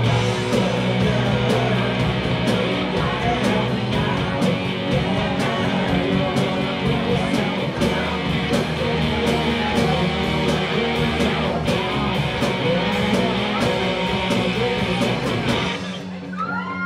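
Live rock band playing loud, with electric guitars, bass, drums and keyboard and a steady drum beat. The drumming stops near the end as the song finishes.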